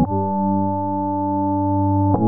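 Instrumental rap beat in a drumless break: a single sustained synthesizer chord held steady, without drums.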